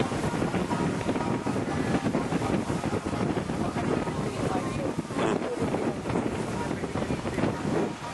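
Wind buffeting the camera's microphone in an uneven rumble, with surf washing onto the beach behind it.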